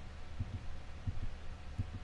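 Low steady hum with soft, irregular low thumps, several a second.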